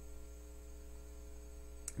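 Faint, steady electrical mains hum in the recording, a low tone with a ladder of even overtones. A single short click comes near the end.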